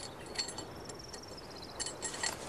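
A few faint clinks and rattles of metal junk being rummaged and pulled out by a magnet, with a faint high trill of rapid pips in the middle.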